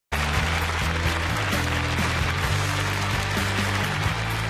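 Talk-show opening theme music with a steady bass line, over studio audience applause.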